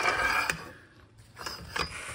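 Floor jack handle being slid over a breaker bar's handle as a cheater bar: a metal-on-metal scrape in the first half second, then a few light clinks about a second and a half in.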